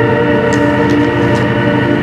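Background music: a keyboard holding a sustained chord, steady throughout.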